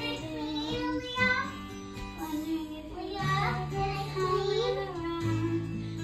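A young girl singing along to a karaoke backing track.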